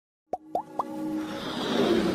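Animated logo intro sound effects: three quick rising pops, each a little higher than the last, within the first second, then a swelling whoosh that builds in loudness.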